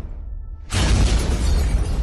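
Edited-in crash sound effects over a low music bed. One crash fades out at the start, and a new one hits sharply about two-thirds of a second in and starts to fade.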